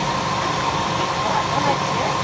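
A motor running steadily with a constant whine and a low rumble, with faint voices about one and a half seconds in.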